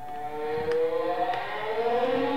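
A man's long, drawn-out strained groan, rising slightly in pitch, from straining hard to pry apart a power strip's sealed plastic casing.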